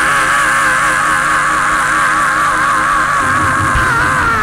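A man's singing voice holding one long note with vibrato into a microphone, the pitch dipping right at the end, over sustained instrumental chords that shift about three seconds in.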